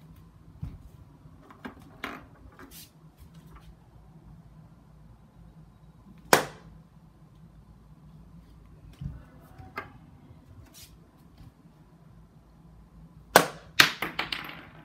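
Sharp impacts of thrown darts striking a dartboard and the wall below it: one loud strike about six seconds in and two in quick succession near the end, with fainter knocks and clicks between.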